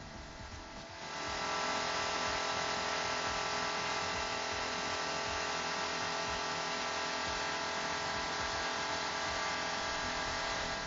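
Turbocharged four-cylinder test engine running hard at high speed and load. It comes up sharply about a second in, then holds as a steady high-pitched whir over a rushing noise.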